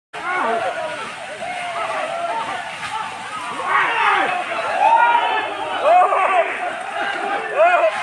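A crowd of people shouting and calling at once, many voices overlapping, some calls louder than others.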